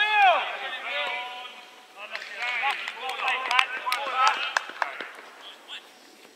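Footballers shouting calls to each other during play, several voices overlapping, with a few sharp knocks of the ball being kicked a little past halfway.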